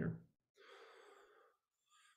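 The tail of a man's word, then a faint breath into a close microphone, about a second long.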